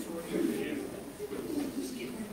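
Indistinct chatter of a small crowd: many voices talking at once, with no clear words.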